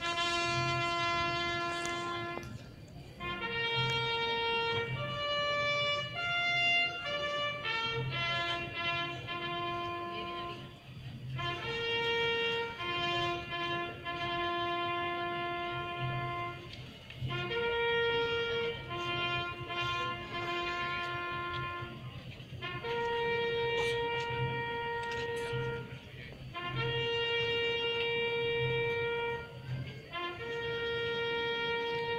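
Brass band playing a slow processional march: long held notes in phrases separated by short breaks every few seconds, over a regular low beat.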